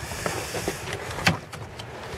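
Rustling handling noise as something is set in place at the car, with a single sharp knock a little over a second in.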